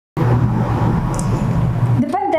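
A loud, steady low rumble with a hum in it, starting suddenly out of silence just after the start.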